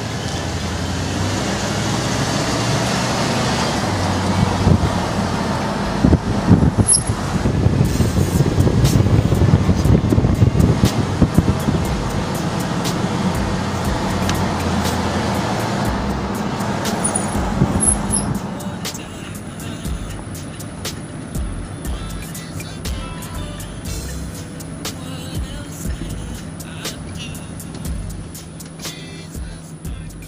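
Road and wind noise from a moving car. It is loud for about the first eighteen seconds, then eases off to a quieter hum with scattered clicks and knocks.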